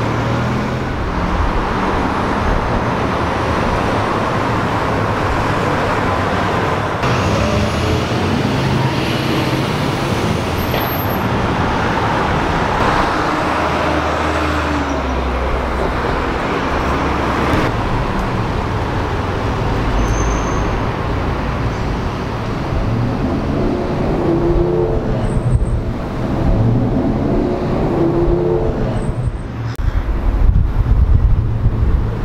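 Steady road traffic: cars and other vehicles running past, a continuous engine and tyre rumble, with engine tones wavering up and down in the last few seconds.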